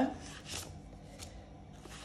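Soft rustling of banknotes and a clear plastic binder envelope being handled, with a couple of faint brushing sounds as the paper slides.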